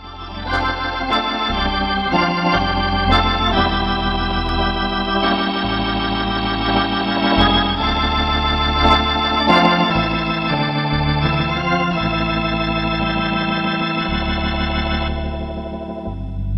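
HX3 Hammond-style tonewheel organ emulation, recorded directly without a Leslie speaker, playing sustained chords over a changing bass line. Short clicks mark the note attacks.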